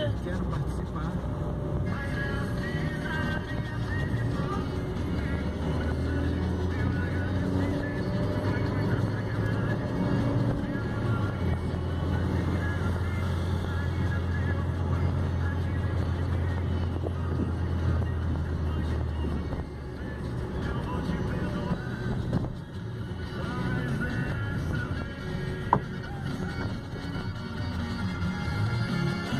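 Music from the car radio playing inside a moving car's cabin, over a steady low drone of engine and road noise.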